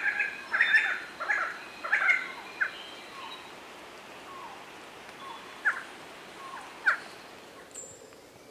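Bird calls: a quick run of loud chirping notes over the first three seconds, then a few single short, sharp call notes about a second apart.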